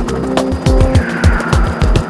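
Background music with a steady drum beat and deep bass, with a falling sweep in the second half.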